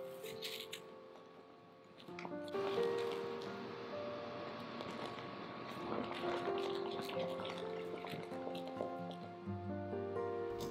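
Soft background music of held notes, with faint squelching of thick white sauce being stirred in a frying pan with a silicone spatula.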